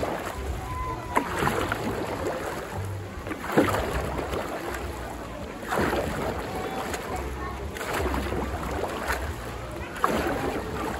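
A dragon boat paddle catching and pulling through pool water, a splash and swirl with each stroke, roughly one stroke every two seconds. Low wind rumble on the microphone runs underneath.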